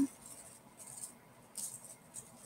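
A few faint, brief rustles as a hand and felt-tip marker move over a sheet of paper.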